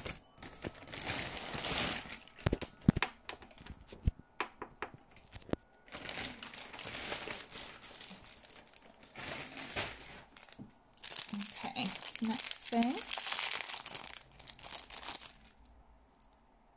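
Clear plastic packaging bags crinkling as they are handled and opened, in several bursts of a second or more, with a few sharp knocks of items set down on the table in the first half.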